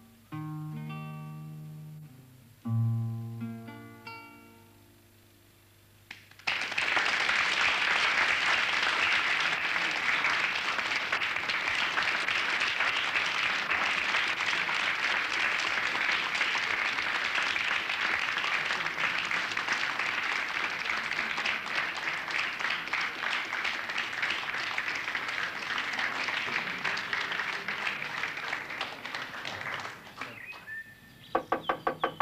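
Closing chords of an acoustic guitar ringing out and fading over the first few seconds. Then, about six seconds in, an audience breaks into steady applause that keeps going.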